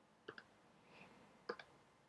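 Faint keystrokes on a computer keyboard: two pairs of soft clicks about a second apart, in near silence.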